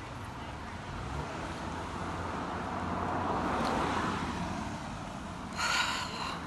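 Road traffic: a vehicle passing, its tyre and engine noise swelling to a peak about four seconds in and then fading, over a low steady rumble.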